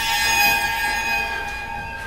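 A sustained, high, chord-like ringing tone of several pitches held together, slowly fading and cutting off abruptly at the end: a sound effect on the film's soundtrack.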